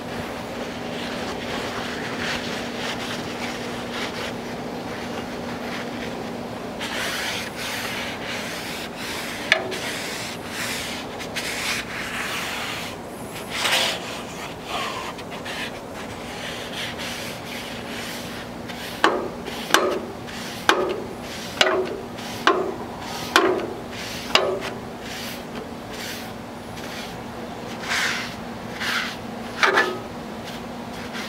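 Paper towel held in metal tongs rubbing oil across the hot rolled-steel top of a Halo 4B griddle to season it. Longer wiping strokes come first, then about seven quick strokes roughly one a second through the middle, over a low steady hum.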